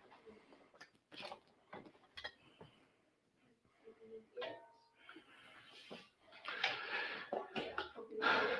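Faint handling of studio lighting gear: scattered light knocks and clinks, then a longer stretch of rustling and scraping in the last second and a half as a fabric softbox is set aside and a metal beauty dish is picked up.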